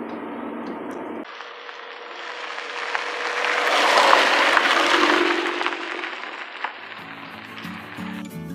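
A car driving over a camera on a gravel road: a hiss of tyres on loose stones that swells as it passes overhead around four seconds in, then fades. It is preceded by a low in-car engine drone, and acoustic guitar music comes in near the end.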